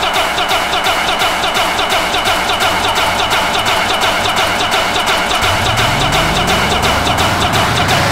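Oldschool hardcore techno from a DJ mix: a fast, steady electronic beat with repeating synth stabs. About five and a half seconds in, a rising sweep begins and climbs through the rest.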